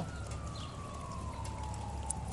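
A faint distant siren, one long tone slowly falling in pitch, over a low steady background rumble.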